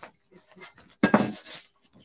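Embroidery hoop frames clattering as hands pull the hoop apart to release the hooped fabric: a sudden hard plastic knock and rattle about a second in, fading over half a second, with faint handling before it.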